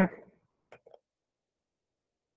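A man's word trails off, then near silence with a couple of faint keyboard clicks about a second in.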